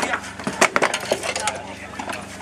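Spanners and metal parts clinking and knocking as a grey Ferguson tractor's wheel is worked on. A string of sharp metallic clicks, the loudest just over half a second in.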